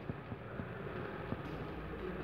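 A low steady rumble with a few faint scattered ticks: handling noise and footsteps of a phone being carried along a concrete bunker corridor.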